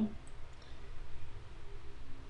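Faint computer mouse clicks over a low steady hum, as text is selected on screen.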